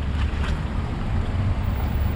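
A low, uneven rumble with no clear events in it.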